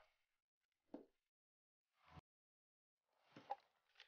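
Near silence, broken by three faint, brief sounds: about a second in, just after two seconds, and near the end.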